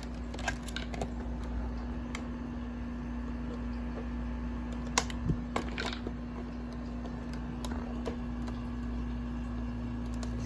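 Scattered light clicks and taps of the plastic blister-pack packaging being handled, with a sharper click about five seconds in, over a steady low electrical hum.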